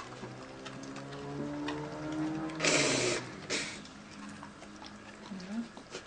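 German shepherd bitch in labour giving a long, low drawn-out moan, then a loud breathy huff through the nose and a second shorter one, while she licks and noses her newborn puppy with faint wet clicks.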